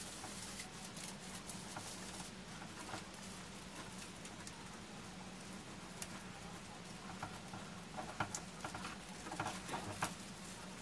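Hands fluffing and adjusting the branches of an artificial pine wreath: faint rustling and small scratching clicks of the plastic needles, busier in the last few seconds, over a faint steady hum.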